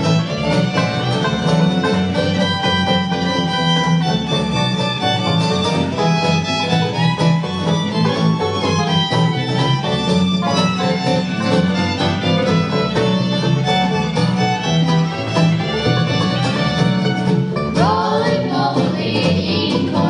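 Two fiddles playing a bluegrass tune in harmony over guitar and banjo backing. Near the end the music changes to voices singing in harmony.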